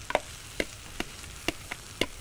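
Omelette frying in a pan: a low, steady sizzle with a few sharp crackles, about five in two seconds.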